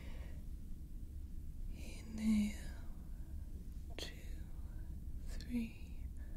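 Soft whispered words over a steady low hum of simulated starship engine ambience, with one sharp click about four seconds in.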